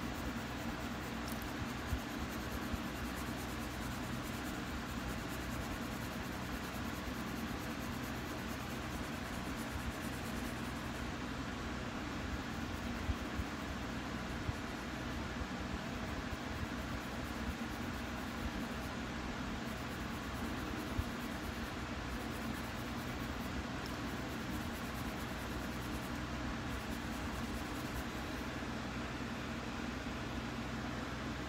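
Faber-Castell colour pencil shading on sketchbook paper, a faint scratching with a few small ticks, over a steady low background hum.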